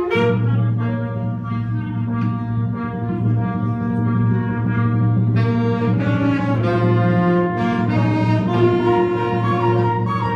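A school band playing live: a full ensemble of held notes over a steady low bass note, growing fuller and brighter about five seconds in.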